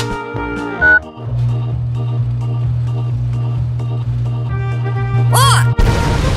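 Cartoon background music over a steady low machine hum from a washing machine. Near the end come a quick rising sound effect and a sudden loud rush of noise as foam bursts out of the machine and fills the room.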